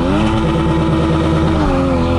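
Sports car engine revving, climbing quickly at the start and then held steady at high revs, with a slight dip near the end.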